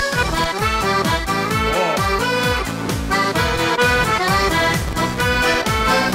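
Piano accordion (Bugari) playing a lively instrumental solo over a band backing with a steady drum beat.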